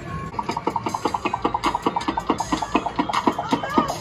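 Arcade ticket-wheel game spinning: a fast run of clicks, each with a short electronic beep, that slows steadily as the wheel winds down toward its prize.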